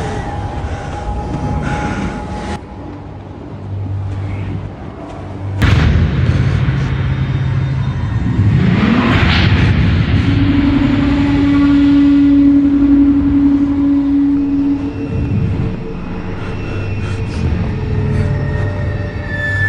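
Dramatic TV soundtrack for a snowstorm scene: ominous music over a noisy wind-like bed, with a sudden boom about a third of the way in and a long, steady low note held for several seconds in the middle.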